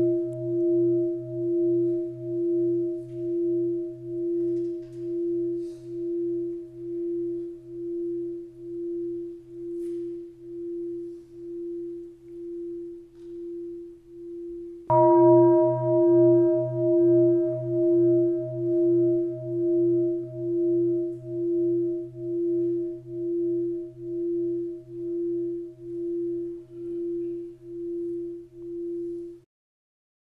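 Buddhist bowl bell (singing bowl) ringing out with a slow wavering pulse, about one beat a second, slowly fading; it is struck again about halfway through and rings out anew until it cuts off just before the end. The bell closes the dharma talk.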